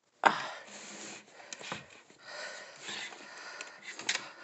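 Soft rustling and handling noise with a few light clicks.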